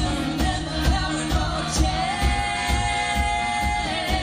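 Live rock band playing a pop-house song: drums keeping a steady beat, bass and guitar, with singing; a sung note is held for about two seconds in the second half.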